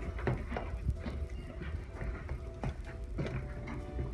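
Spoons knocking and scraping against plastic containers as homemade slime is stirred, giving irregular clicks and knocks.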